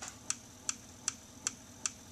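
Small axial-flux motor (the 'Stargate motor') with its rotor spinning at about 154 RPM, giving a light, even click about two and a half times a second, roughly once per turn of the rotor.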